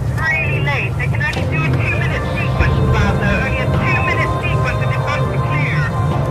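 A steady low engine drone, with indistinct voices rising and falling over it.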